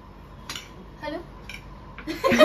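Spoons clinking lightly against plates during a meal: two small clicks about a second apart.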